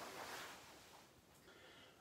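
Near silence: room tone, with a faint hiss fading away in the first second.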